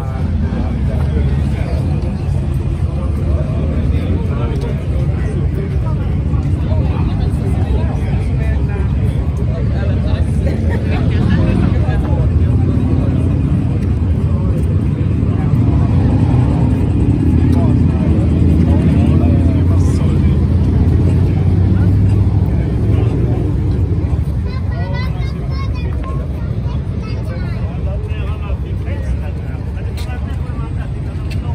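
A motor vehicle engine running with a steady low rumble that swells for several seconds in the middle, under the chatter of people around.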